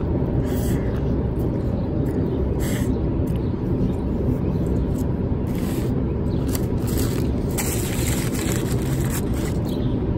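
A person biting into and chewing a chicken gyro close to the microphone, with short soft clicks now and then, over a steady low outdoor background rush.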